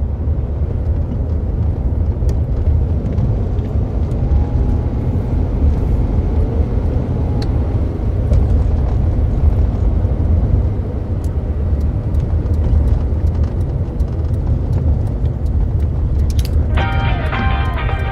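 Steady low rumble of a car running, heard from inside the cabin. Music with held chords comes in about a second before the end.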